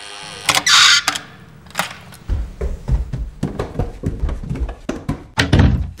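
An electric door-release buzzer ends, followed by a loud clunk of the door and then a run of irregular thumps and knocks.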